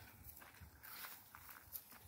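Faint, scattered footsteps on dry sandy ground, barely above near silence.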